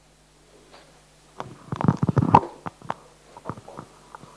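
Loud rustling and knocking close to a microphone, starting about a second and a half in, followed by a few scattered knocks: the sound of a microphone being handled.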